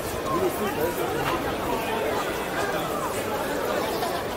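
Chatter of several people talking at once, with overlapping voices and no single voice standing out. The level stays steady throughout.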